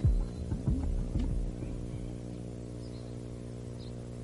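A steady low hum made of several evenly spaced tones, with a few faint short sounds dying away in the first second and a half.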